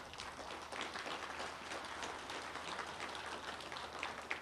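Faint applause from a crowd: many hands clapping at once, blending into a dense patter that swells in at the start.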